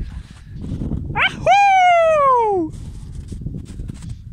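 A single loud, high-pitched vocal call about a second and a half long, jumping up sharply and then falling steadily in pitch, over a low rumbling noise.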